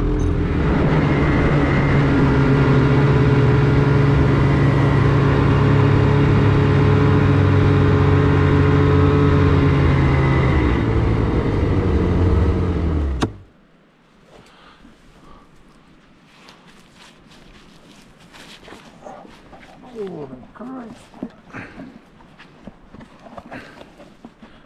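Snowmobile engine running steadily at speed, its pitch sinking slightly as it slows over the last few seconds before it stops suddenly about 13 seconds in. After that only faint knocks and rustles.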